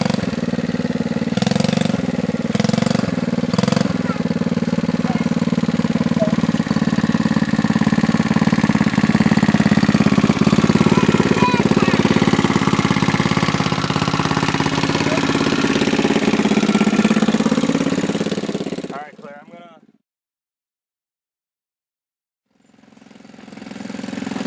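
Small youth ATV (four-wheeler) engine running steadily as a child rides it, louder in the middle as it passes close. The sound fades out and cuts to silence about twenty seconds in.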